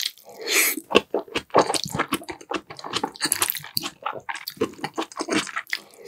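Close-miked chewing of a mouthful of gan-jjajang, black-bean-sauce noodles with pork and onion: wet, with many small smacking clicks.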